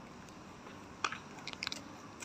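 A few short, sharp clicks and crunches: one about a second in and a quick cluster near the end, over faint background noise.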